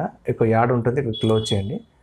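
A man talking, with a thin, steady high tone sounding under the second half of his words and stopping about when he pauses.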